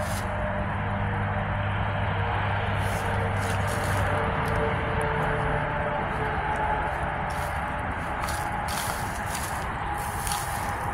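Steady outdoor background hum with a low drone that fades about halfway through, with a few soft rustles from footsteps over grass.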